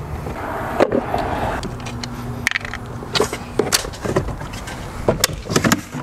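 Clicks and knocks of tools and metal parts as lead-acid camper batteries are disconnected at their terminals and lifted out of the battery box, several sharp strikes over a few seconds, over a steady low hum.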